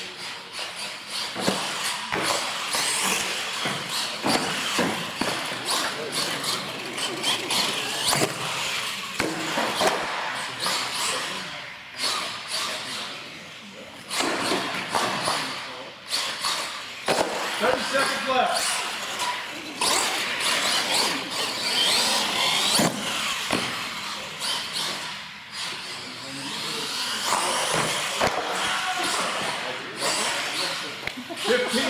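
Radio-controlled monster truck driving hard on a concrete floor: its motor whining up and down in pitch, with repeated sharp knocks from the truck landing and bouncing, against people talking in a large echoing hall.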